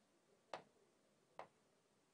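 Two sharp taps on an interactive display screen, a little under a second apart, faint against near silence.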